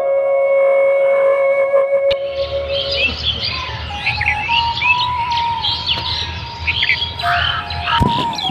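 Soft flute music holding a long note, which gives way about two seconds in to many birds chirping and calling over a low, steady hum.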